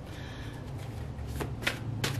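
Tarot cards being handled, with three crisp snaps of card stock about a quarter second apart in the second half, over a steady low hum.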